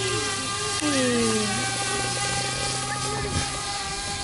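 DJI Mavic Air quadcopter flying overhead, its propellers giving a steady whine made of several fixed pitches at once.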